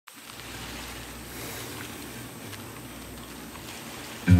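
A faint, steady hiss with a low hum underneath and a few soft ticks, noise with no tune in it.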